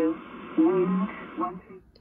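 Shannon VOLMET aviation weather broadcast on 5.505 MHz played through a shortwave communications receiver's speaker: a voice reading airport weather reports, muffled and with a hiss behind it. It cuts off about one and a half seconds in.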